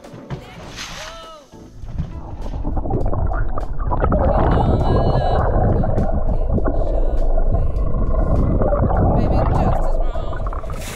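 Water heard through a camera held underwater beside a sailboat's hull: a loud, muffled rushing and rumbling that builds from about two seconds in and then holds steady.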